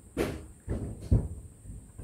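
Hands handling a small box on a table: a couple of short scrapes and a dull knock a little after a second in.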